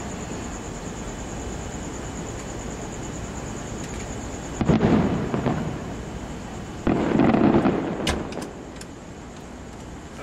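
Aerial fireworks bursting: two heavy booms about two seconds apart, each rumbling on for a second or so, followed by a few sharp crackles.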